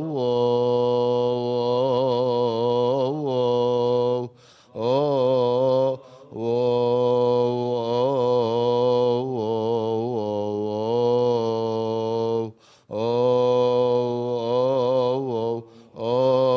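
A male voice chanting an unaccompanied Coptic liturgical hymn, long drawn-out notes bent and ornamented within each breath, with brief pauses for breath about four, six and twelve seconds in.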